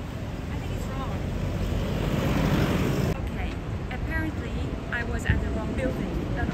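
Street traffic noise: a vehicle's rumble swells for a couple of seconds and cuts off suddenly just past halfway, leaving a lower rumble with a voice faintly speaking in snatches.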